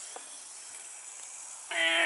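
Small wind-up toy truck's clockwork motor running, a faint steady whirring hiss, with a light tap near the start.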